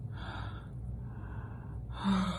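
A man breathing heavily through his mouth, two long gasping breaths, his nostrils plugged with nose-waxing sticks.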